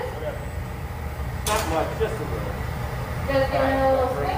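Steady low rumble of a glassblowing hot shop's gas-fired furnaces and glory holes with their ventilation, under brief fragments of speech.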